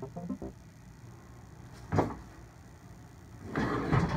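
Furniture being handled: a single knock about two seconds in, then a rising scraping rattle near the end as a plastic folding table is tipped up on its side.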